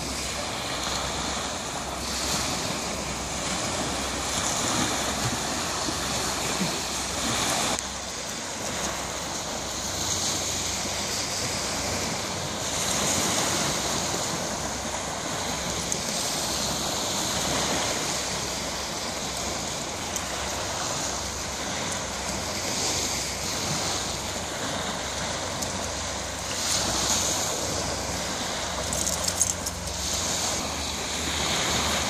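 Small waves breaking and washing up a sandy beach in a steady, surging hiss, with wind buffeting the microphone.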